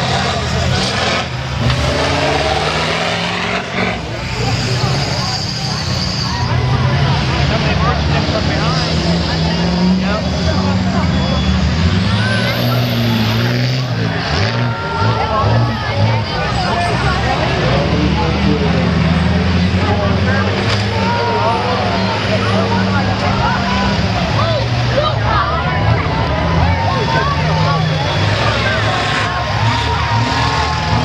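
School bus engines running and revving as the buses manoeuvre, under steady crowd voices.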